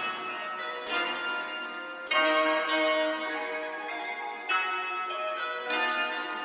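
Bell-like instrumental melody from a hip-hop type beat, playing alone without drums or bass: slow held chords changing every second or two. This is the beat's outro.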